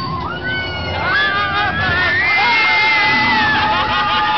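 Several riders on a drop-tower ride screaming together as the car drops. The screams overlap, get louder about a second in and are held long.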